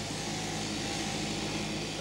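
Sheep-shearing handpiece running as it cuts through a fleece: a steady, even mechanical hum.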